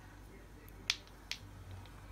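Two light, sharp clicks about half a second apart, from small cosmetic containers being handled and set down, over faint room tone.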